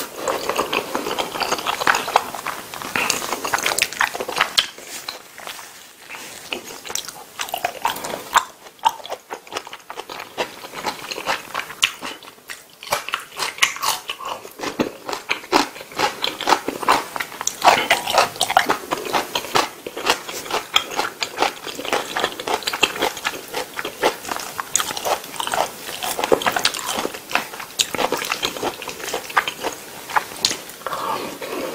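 Close-miked chewing of a mouthful of spaghetti in tomato sauce: a dense, irregular run of short wet clicks and smacks.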